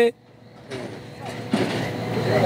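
Outdoor background noise: a rushing sound that comes up softly under a second in and grows louder about halfway through.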